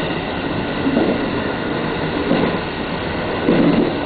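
Running noise inside a JR Hokkaido 785 series electric train rolling along the track, with a thump from the wheels crossing track joints recurring about every second and a quarter.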